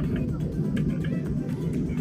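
Steady low rumble inside a Boeing 737-900ER cabin as the airliner taxis after landing, with faint music in the background.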